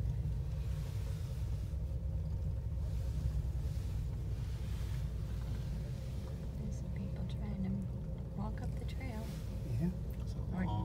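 Steady low rumble inside a moving gondola cabin as it rides down the cable, with a faint hum running under it. Faint voices murmur near the end.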